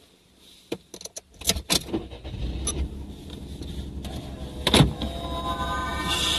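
A car's engine is started from inside the cabin: a few clicks, then the engine catches and settles into a steady low idle rumble, with a sharp clunk about five seconds in.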